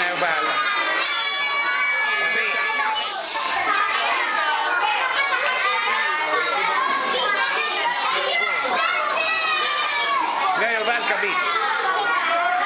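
Many young children's voices at once, chattering and calling out.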